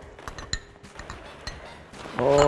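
Light clinks of glass on glass, three of them about half a second apart, as a small glass bowl and a spoon touch a glass mixing bowl while orange juice is poured over sliced green onions.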